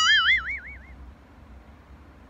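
A cartoon-style boing sound effect: one springy, wobbling tone lasting about a second that fades away, followed by quiet room tone.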